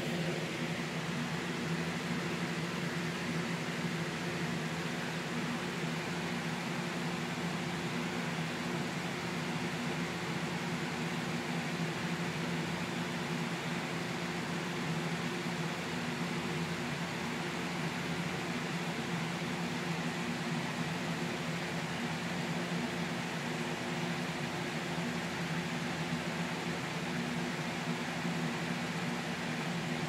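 Steady, unchanging machine hum: a low drone with an even hiss over it.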